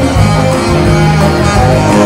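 A live soul band playing loudly, with electric guitar and a strong bass line carrying a full-band passage.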